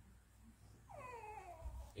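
A faint, high vocal sound about a second long, starting about a second in and falling steadily in pitch, like a whine or a drawn-out 'ohh'.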